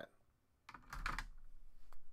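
Hands rubbing and sweeping across a sheet of drawing paper: a brief scratchy rustle about a second in, then a small click near the end.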